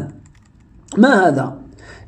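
A man's lecturing voice: a pause, then one short spoken word about a second in.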